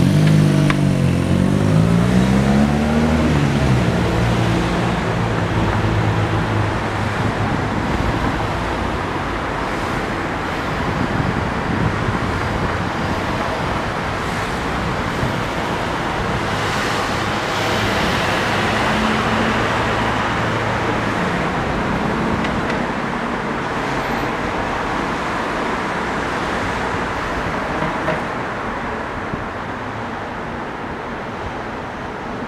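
City street traffic: a vehicle engine close by in the first few seconds, its pitch rising and then falling, followed by a steady engine hum that fades about a third of the way in, over a continuous wash of road noise.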